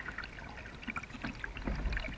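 Water dripping and trickling off a kayak paddle between strokes, as faint scattered drips and small splashes on the river surface.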